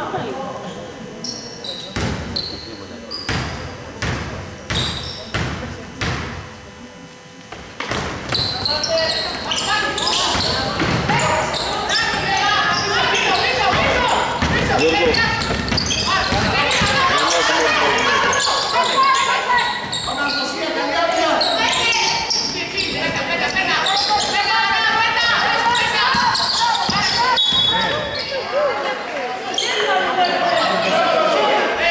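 A basketball bounced on a hardwood gym floor about once a second for the first seven seconds, each bounce echoing in the hall. From about eight seconds in, players' shouts and voices take over as live play goes on.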